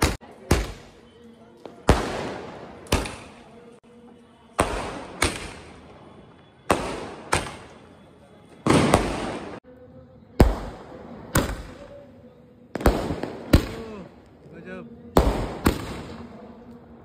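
A 30-shot aerial firework cake firing shell after shell: sharp bangs about every second, often in quick pairs, each trailing off in an echo.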